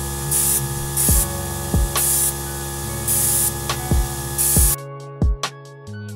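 Central Pneumatic airbrush spraying paint in short bursts of hiss, about four in the first few seconds, with the trigger released between them. Background music with a deep beat plays throughout, and the spraying stops shortly before the end.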